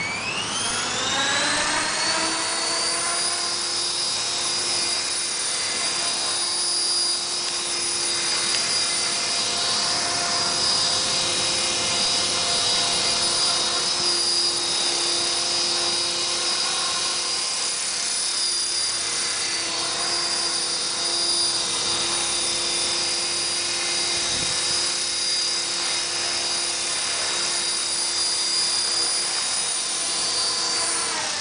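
Esky Belt CP electric RC helicopter's motor and rotor spooling up with a rising whine over the first couple of seconds, then running at a steady high whine at flying speed.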